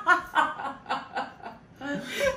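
Two people laughing hard, a run of short repeated laughs that tapers off through the middle and swells again near the end.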